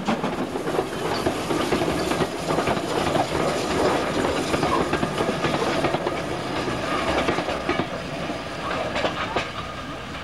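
A steam-hauled passenger train passes close by: its coach wheels clatter over the rail joints while the locomotive's exhaust works beyond them. The sound slowly dies away as the train pulls off into the distance.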